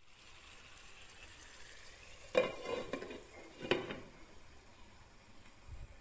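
Hilsa fish in mustard gravy cooking in a pan with a faint, steady sizzle. A spoon stirring in the pan knocks and scrapes against it twice, a little over a second apart, around the middle.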